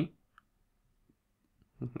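Mostly near silence in a pause between bits of a man's speech, broken by a single faint, short click about half a second in.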